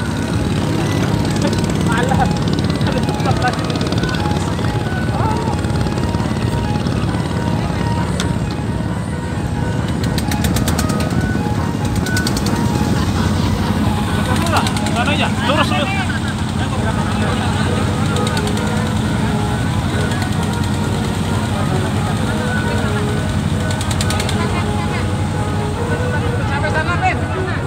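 Klotok wooden river boat engine running steadily at constant speed, with people's voices over it.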